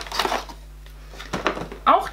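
Cardboard advent-calendar compartment rustling, with a few light clicks and knocks about halfway through, as a lip balm stick is pulled out of it.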